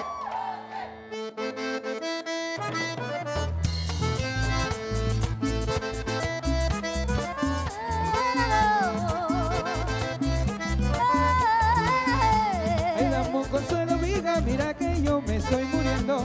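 Button accordion playing a Panamanian música típica tune. It opens alone for about three seconds, then bass and percussion come in with a steady dance beat. Around the middle a voice sings long, wavering held notes over it.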